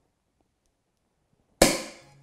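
Cork popping out of a bottle of Crémant de Loire sparkling wine, one sharp pop about one and a half seconds in, followed by a brief hiss of escaping gas that dies away.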